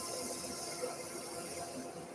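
Woodturning lathe spinning a tulipwood blank while a hand-held rotary pad sander is held against its edge, giving a steady sanding hiss that fades slightly near the end.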